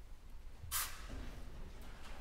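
Quiet concert-hall room tone with a low rumble and no music playing, broken once, about three-quarters of a second in, by a brief sharp hiss of noise.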